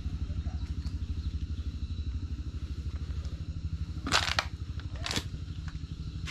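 A steady, rapidly pulsing low rumble like a small engine running, with two sharp clacks about four and five seconds in.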